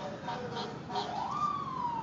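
Fire engine siren wailing. Its pitch falls, sweeps up again about a second in, then slowly falls.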